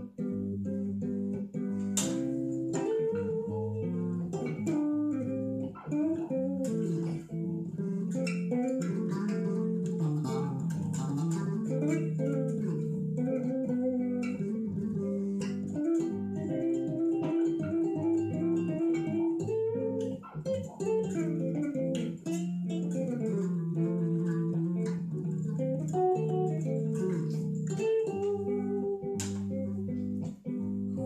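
Solo extended-range electric bass played chord-melody style: a melody line moves over lower notes sounded together, with sharp plucked attacks about two seconds in and again near the end.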